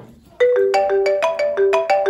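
Mobile phone ringtone: a marimba-style melody of quick, bright mallet notes, starting about half a second in and repeating its short phrase.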